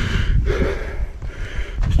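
A man breathing hard close to the microphone, winded from heavy work hauling rock, with a low rumble underneath.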